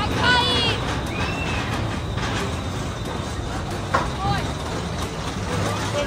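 Roller-coaster train rumbling steadily along its track. Riders' high-pitched cries come in the first second and again briefly just after.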